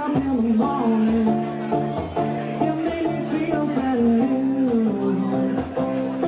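Live solo acoustic guitar and male voice: the guitar is played in a steady rhythm under a sung melody of long, gliding notes.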